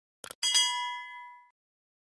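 Two quick clicks, then a bright, bell-like notification ding that rings with several clear tones and fades out over about a second: a subscribe-button click and notification-bell sound effect.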